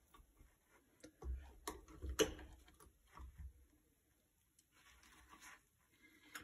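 Faint kitchen handling sounds: a few soft clicks and taps with light rustling as blanched baby artichokes are lifted out of a colander and set face down on paper towel. The sharpest click comes about two seconds in.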